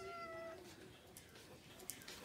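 A cat meowing: the faint end of one drawn-out meow, which stops about half a second in.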